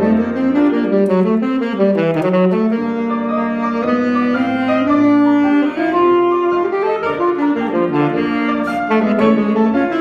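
Alto saxophone playing a melody of connected notes that move up and down, with a few longer held notes.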